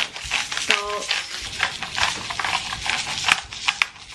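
Hand-twisted salt grinder and then pepper grinder grinding, a fast, uneven run of small dry clicks.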